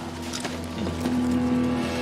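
Soundtrack of an action film played over cinema speakers: a steady low droning sound, like a vehicle engine, with no speech.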